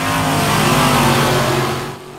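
A pack of dirt late model race cars running at speed on a dirt oval, their engines loud and steady together, easing slightly near the end.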